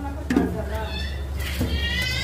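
A plastic food container knocks once against a kitchen counter. From about a second in comes a high-pitched, drawn-out cry.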